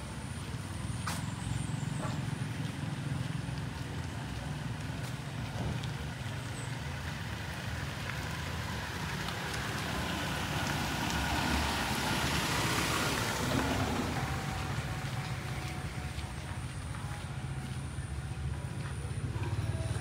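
A motor vehicle passing along the street: its noise swells to a peak about two-thirds of the way through and then fades, over a steady low hum.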